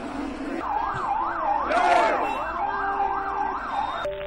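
Vehicle siren wailing rapidly up and down in pitch, about three cycles a second, starting about half a second in, over crowd noise that swells loudest around two seconds in.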